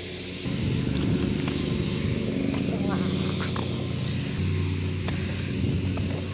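A motor engine running nearby: a low, steady rumble that starts abruptly about half a second in and grows a little heavier past the middle.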